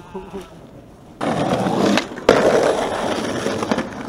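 Skateboard wheels rolling loudly over a concrete sidewalk, starting about a second in. A sharp clack of the board comes about two seconds in, and the rolling carries on after it.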